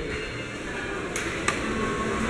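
A vandal-resistant elevator hall call button pressed, giving a sharp click about one and a half seconds in, over a steady low hum of the lobby.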